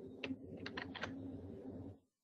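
A few faint computer-keyboard keystrokes, about five clicks in the first second, over a low steady background hum. The sound cuts off abruptly near the end.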